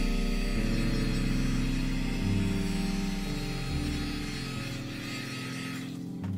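Handheld heat gun running over a wet resin pour, a steady motor hum with a rush of air, switched off just before the end. Soft ambient music plays underneath.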